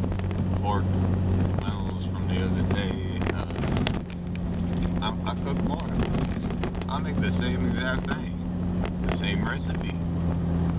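A 1998 Jeep Cherokee's engine and road noise drone steadily inside the cabin while it is driven. The engine note shifts and briefly drops in level about four seconds in.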